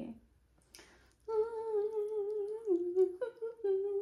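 A woman humming a slow tune of a few long, held notes, starting about a second in, the pitch stepping down and then back up.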